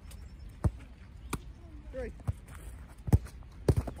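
A football being struck and caught in goalkeeper drills: about five sharp thuds of the ball off boot, gloves and turf, the loudest a little after three seconds in.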